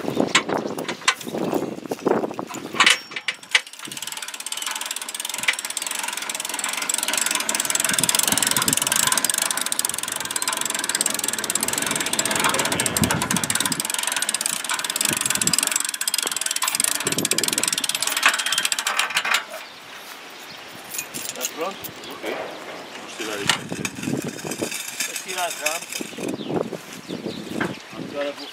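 Small motorized rail dresine making a steady mechanical rattle and whir. It starts a few seconds in, runs for about fifteen seconds and stops abruptly. Irregular clicks and knocks come before and after it.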